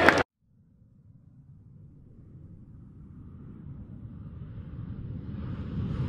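A low rumbling sound effect that begins just after an abrupt cut and swells steadily louder: the build-up to an animated club-crest logo reveal.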